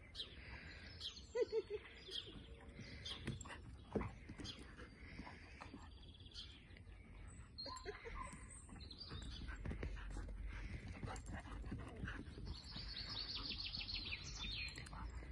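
Two dogs play-fighting: scuffling and a few short vocal sounds from the dogs about a second in. Birds chirp in the background near the end.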